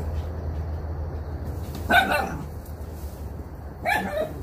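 A dog barks twice, once about halfway through and again at the very end, over a steady low rumble.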